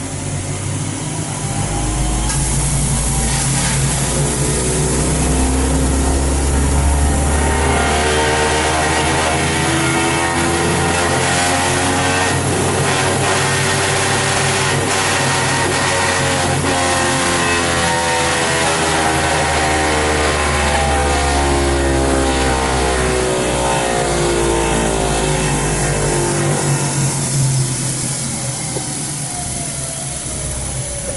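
Clutch dyno spinning a 7-inch Ram dual-disc clutch assembly through a test pull toward 6,000 RPM. A steady whine and hum start about two seconds in, climb in pitch to the middle and fall again as the clutch runs down to a stop near the end.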